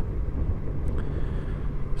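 Steady low rumble of a Yamaha XJ6 Diversion F motorcycle's inline-four engine running as it rides along, mixed with wind noise on the onboard microphone.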